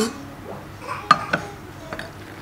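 Metal utensils clinking against a stainless wire-mesh sieve while cooked rice porridge is worked through it: two sharp clinks a little past the middle.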